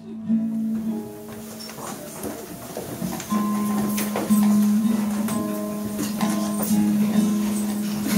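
Live solo guitar music: soft, scattered plucked notes from a nylon-string classical guitar, then a steady held low note comes in about three seconds in and sustains, with light clicks over it.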